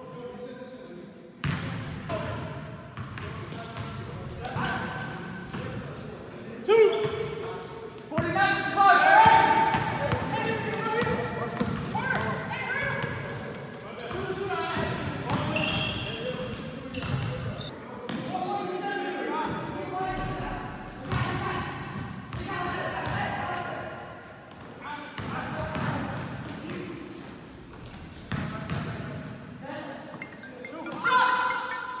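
A basketball bouncing on a gym floor, mixed with players' indistinct voices and calls, echoing in a large hall.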